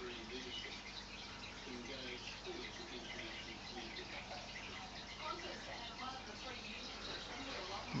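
Quiet steady background hiss with faint, indistinct voices in the background.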